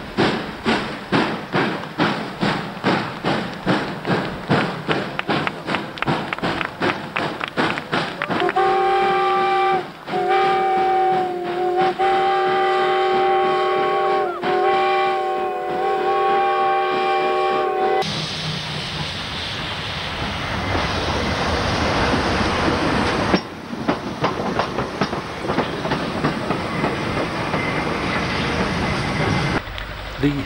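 Large steam locomotive working hard, its exhaust beats quickening as it gets under way. It then sounds a multi-tone whistle in several long blasts over about ten seconds, and this is followed by a steady rushing noise.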